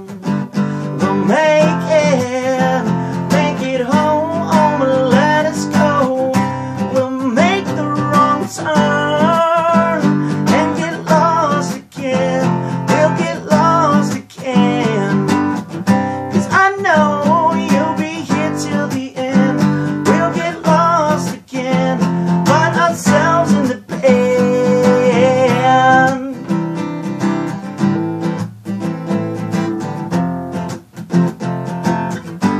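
Acoustic guitar strummed in steady chords with a man singing over it. The singing stops about 26 seconds in and the strumming carries on alone.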